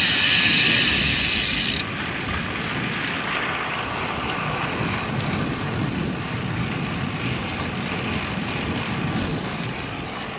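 Steady wind and road noise on a bike-mounted action camera while a road bike rolls along, with a low rumble underneath. A loud hiss covers the first two seconds and cuts off sharply.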